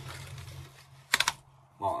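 Cap of a Protimeter grain moisture meter being screwed down to compress a ground grain sample, giving a quick cluster of three or four sharp clicks about a second in.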